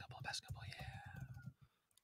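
A faint, whispery voice trailing off with a falling tone, fading to silence about one and a half seconds in.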